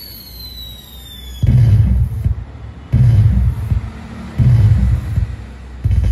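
Firework sound effect from a pixel LED cracker-tree controller with sound: a high whistle falling in pitch for about a second and a half, then deep booms about every second and a half.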